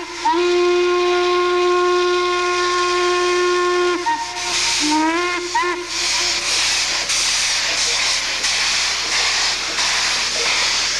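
Norfolk & Western steam locomotive's whistle: one long steady blast of about four seconds, then a shorter blast a second later that slides in pitch as it opens and closes. After it, a steady hiss of steam.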